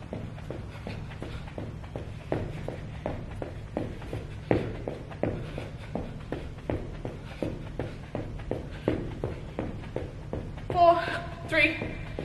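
Feet striking the floor in a fast, even rhythm, about three steps a second, as a person does high knees on the spot. A woman starts speaking near the end.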